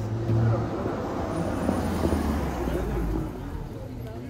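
A car driving past close by on a city street: a low engine hum that drops in pitch as it goes by, with tyre noise swelling and fading around the middle.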